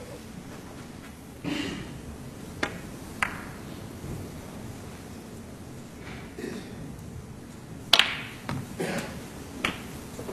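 Snooker balls clicking. Two sharp single clicks come a few seconds in; near the end a snooker shot pots the black, with a loud click of cue and ball followed by a few lighter knocks as the balls run.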